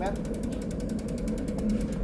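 Rapid, even ticking of a road bike's rear freewheel hub, about ten clicks a second, as the rear wheel coasts in the work stand.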